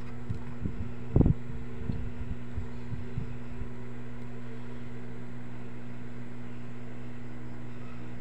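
Steady low background hum, with a few light taps early on and one sharp knock about a second in.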